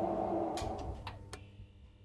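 Sound effects from an audio drama: a steady electronic hum that fades out, with a few sharp clicks near the middle and then a faint, steady high tone.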